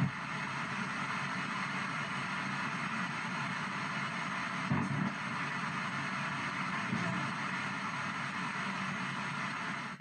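P-SB7 ghost box sweeping FM radio stations in reverse, giving a steady hiss of static broken by brief snatches of broadcast sound, one a little louder about five seconds in. The fragments are captioned as spirit voices: "He's here..." and "Where's Shawn?"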